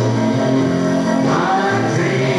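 A group of voices singing together, choir-style, over instrumental accompaniment, moving through held notes.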